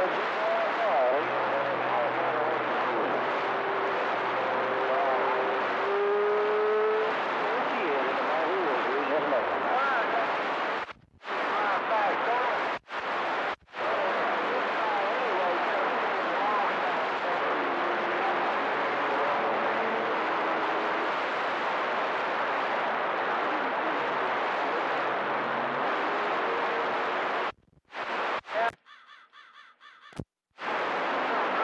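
A CB radio receiving on channel 28 passes a steady rush of static, with faint, garbled voices and warbling, whistling tones mixed into it. The static cuts out briefly a few times around the middle and again near the end.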